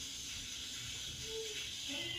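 Hot flat iron clamped on a lock of hair, giving off a steady hiss of steam.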